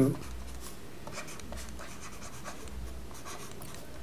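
Faint scratches and light taps of a stylus writing strokes on a tablet, over a low steady hum.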